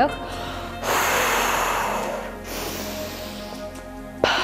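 A forceful exhale blown out through the mouth, the first stage of Bodyflex diaphragmatic breathing, lasting about a second and a half, followed by a quieter breath. Background music plays throughout.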